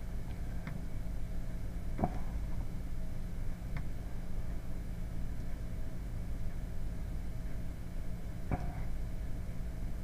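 Steady low background hum, with a few faint short clicks scattered through it.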